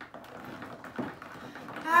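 Utensils stirring sticky homemade slime (glue and shaving foam with activator) in glass bowls, a soft wet scraping with a single clink about a second in, as the activator works in and the slime thickens. A voice starts right at the end.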